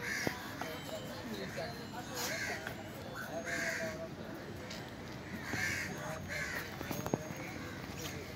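Crows cawing, about five short harsh calls a second or two apart, over faint background voices. A few sharp knocks of a knife on the wooden chopping block are heard as well.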